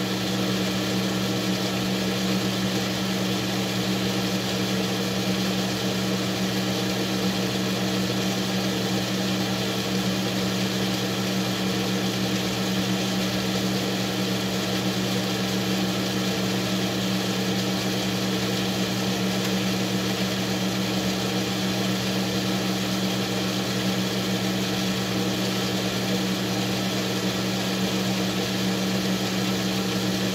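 Metal lathe running steadily, its motor and gearing giving a constant hum as the chuck spins a small workpiece being turned down.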